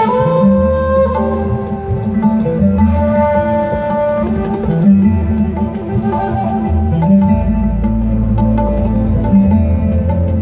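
A live band playing, heard from the audience: a held melody line over guitars, bass and drums.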